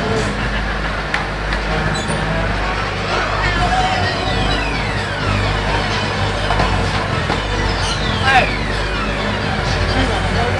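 Busy funfair ambience: a crowd talking over a steady low machinery hum, with faint music. Twice, about four and eight seconds in, a long whistle-like tone glides downward in pitch.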